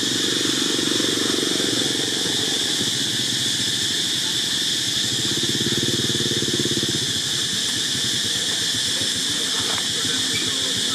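Motorcycle engine running nearby, a low steady rumble that grows louder between about five and seven seconds in, under a constant high-pitched hiss.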